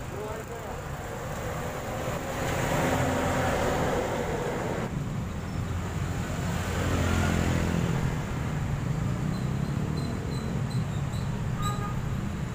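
Road traffic: buses and minivans driving past close by, engine and tyre noise swelling twice, about three and seven seconds in.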